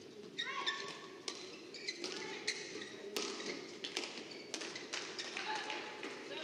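Badminton rally: rackets hitting the shuttlecock in a string of sharp hits starting about half a second in, and court shoes squeaking on the court floor between them, over a steady low murmur of the crowd.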